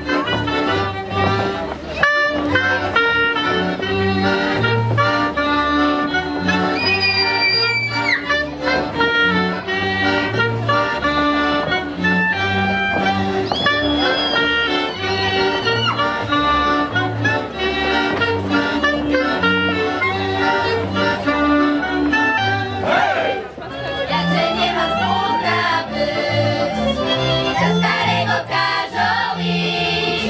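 A live folk band with fiddles and a double bass playing a lively dance tune, with an even, repeating bass beat under the melody.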